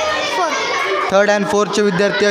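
Speech only: children's voices talking for about a second, then a deeper voice speaking.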